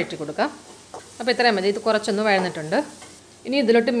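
Chopped shallots frying in oil in a kadai, sizzling steadily as a wooden spatula stirs them. A woman's voice speaks over most of it.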